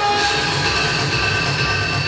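Loud electronic drone: several steady high tones held over a low, fluttering rumble.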